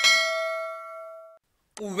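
A bell-chime notification sound effect, struck once. Its ringing tones fade and then cut off suddenly about a second and a half in.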